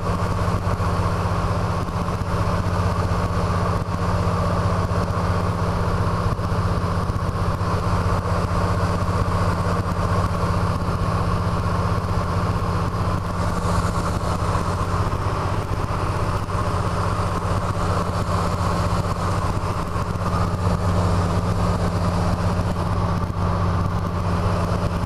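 DHC-2 Beaver's Pratt & Whitney R-985 Wasp Junior nine-cylinder radial engine and propeller droning steadily in cruise flight, heard from inside the cockpit.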